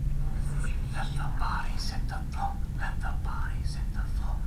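Soft whispered speech in short, breathy syllables over a low steady hum.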